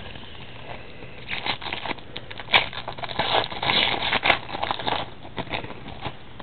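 Foil wrapper of an Upper Deck Masterpieces trading-card pack being torn open and crinkled by hand: a run of crackling rustles starting about a second in and dying away shortly before the end.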